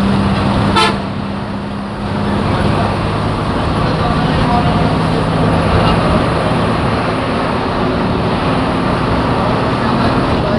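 Moving bus heard from inside the cabin: engine and road noise running loud and steady, with a long horn note sounding through the first couple of seconds and a sharp click just under a second in.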